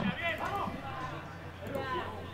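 Faint, distant shouts from players on a football pitch, a couple of short calls, over a low steady hum.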